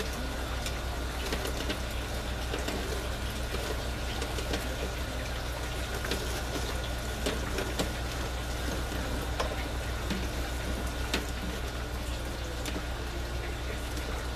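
Steady trickle of water running through an aquaponics system, with a constant low pump hum beneath it. Small scattered clicks and rustles come from a plastic net pot, wrapped in scrubber-pad material, being worked into a PVC grow tower.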